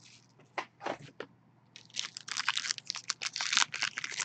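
A few faint ticks, then from about two seconds in a dense run of crinkling and tearing as the foil wrapper of a trading-card pack is handled and torn open.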